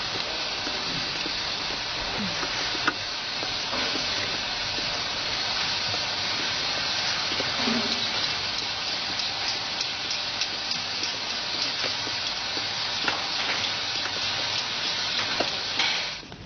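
Steady hissing noise of a meat-processing hall, with a few light knocks and clicks scattered through it.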